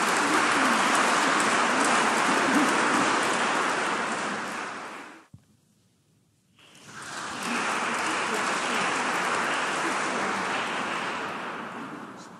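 Audience applauding in a large church. The applause breaks off suddenly about five seconds in for more than a second, then comes back and dies away near the end.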